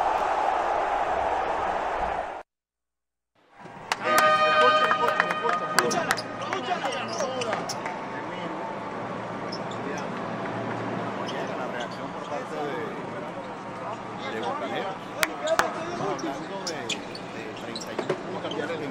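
A short whooshing sound with the channel logo, a second of silence, then basketball gym ambience during a timeout: many voices chattering, a horn-like blast of several tones about four seconds in, and scattered sharp knocks of a ball and feet on the hardwood floor.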